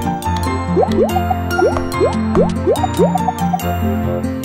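Children's background music with a run of about seven quick rising cartoon 'bloop' sound effects through the middle, as small toy pieces pop into place.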